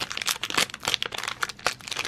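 Shiny black foil mystery pin bag crinkling as it is squeezed and opened by hand: a dense, irregular run of sharp crackles.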